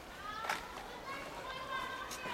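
Children's voices calling and chattering in the background, high-pitched and at some distance.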